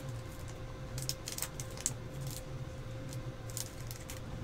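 Faint handling of trading cards in plastic sleeves and a cardboard box: scattered light clicks and rustles, over a steady faint electrical hum.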